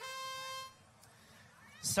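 Match-start tone sounding once at a steady pitch for about three-quarters of a second, then cutting off sharply: the signal that the driver control period of the robotics match has begun.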